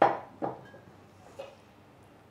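Kitchenware being handled at the stove: a sharp clink right at the start, then a lighter one about half a second later.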